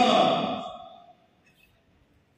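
A man's voice preaching into a microphone, ending a drawn-out phrase that fades away within the first second, followed by a pause of near silence.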